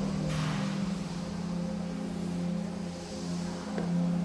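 Slow, calm relaxation music made of sustained low droning tones, with a brief soft rush of noise about half a second in.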